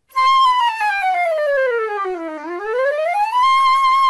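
A single flute tone in an intro sting. It starts high, glides smoothly down almost two octaves, sweeps back up to the starting pitch and holds there.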